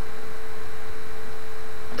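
Steady electrical hum with a constant faint tone over hiss, with no clicks or other events: mains hum picked up in the microphone's recording chain.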